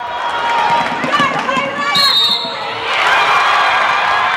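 Live sound of a basketball game in a gym: crowd noise and voices, with ball bounces. A brief high tone comes about two seconds in, and the crowd grows louder near the end.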